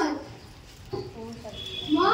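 A child's voice through a microphone: a held note trails off at the start, then after a short lull come a few short broken vocal sounds.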